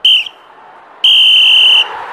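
Referee's whistle: a short blast, then about a second in a longer blast of the same high, steady pitch. This is the blast pattern that signals full time.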